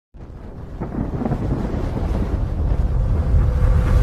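Deep rumbling intro sound effect that starts suddenly and slowly swells louder, with a faint steady tone joining about three seconds in.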